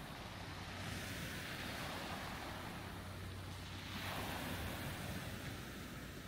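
Small waves washing onto a gravel beach in gentle swells, with light wind.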